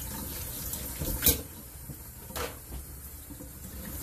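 Kitchen faucet running into a stainless steel sink while the lid of a coffee press is rinsed by hand under the stream. Two short knocks sound, about a second in and again about two and a half seconds in.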